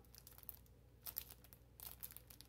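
Faint crinkling of a clear plastic packaging bag as it is handled, in a few short crackles.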